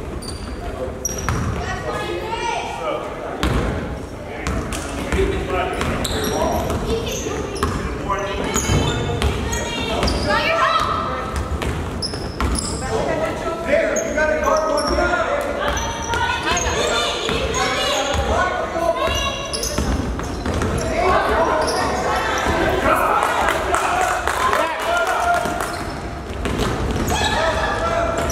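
A basketball being dribbled on a hardwood gym floor during a youth game, the bounces echoing in the large hall, with indistinct voices of players and spectators calling out throughout.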